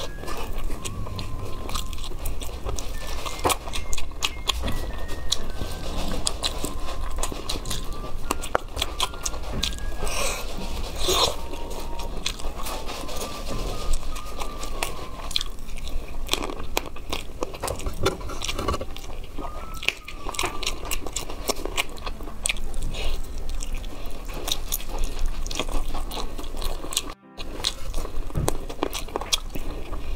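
Close-miked eating of chicken wings: biting and chewing meat off the bone, with a dense stream of short, sharp mouth clicks and small crunches.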